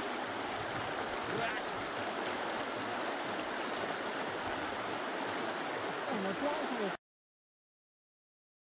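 Shallow meltwater stream flowing over gravel beneath ice shelves, a steady rushing of water that cuts off abruptly about seven seconds in.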